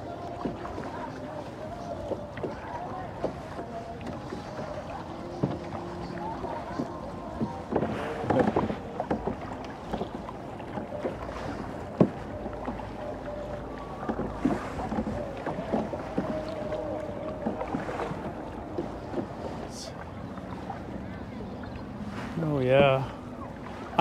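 Kayak paddles dipping into calm water, with occasional sharper splashes as a tandem kayak is paddled along. A man's voice speaks briefly near the end.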